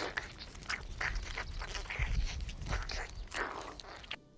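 Wet, irregular sucking, slurping and smacking of a mouth feeding on blood from a small animal held to the lips.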